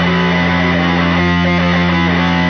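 Powerviolence/punk band recording: distorted electric guitar holding a loud, steady chord that rings through.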